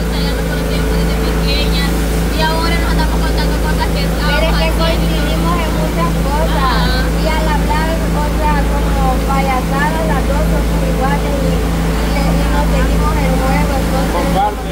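Several people talking in Spanish over a steady low rumble with a faint constant hum beneath the voices.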